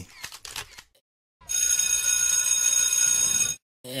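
A bell rings steadily for about two seconds, starting a little over a second in and cutting off suddenly.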